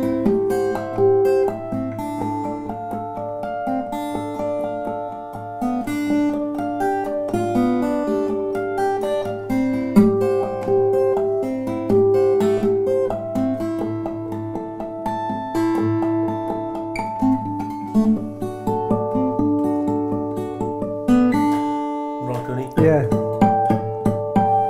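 Small-bodied Lowden acoustic guitar with walnut back and sides, played fingerstyle: a clear, singing melody line over a steady low bass note. The playing stops about two seconds before the end and a man's voice follows.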